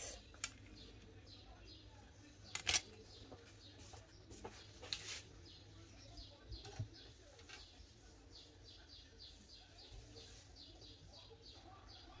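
Faint bird chirping in the background, short calls repeated a few times a second, with a few light clicks as a clear plastic ruler is picked up and laid down on the table, the sharpest about three seconds in.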